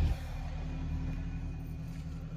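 Steady low hum of a car, heard inside the cabin, after a brief handling knock on the phone at the start.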